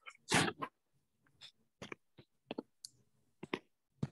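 A short, breathy burst from a person close to the microphone, followed by a few faint, scattered clicks.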